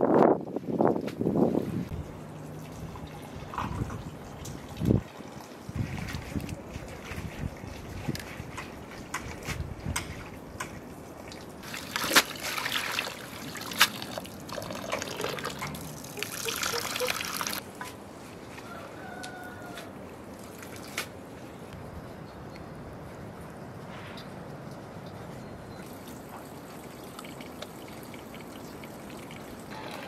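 Water sloshing and trickling in a metal bowl as fresh greens are washed by hand, loudest for several seconds in the middle.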